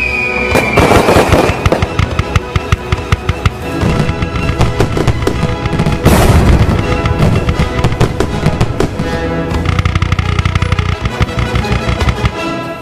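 Fireworks sound effects over background music: rapid crackling and popping throughout, with a loud burst about six seconds in.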